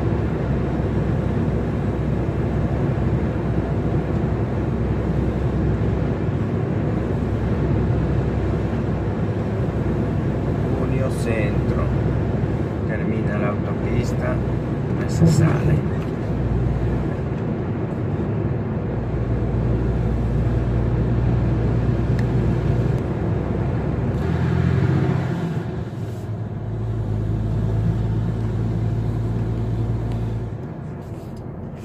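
Lorry engine and tyre noise heard from inside the cab while driving at a steady speed. A few short, sharper sounds come about halfway through, and the engine note drops briefly and then steadies again near the end.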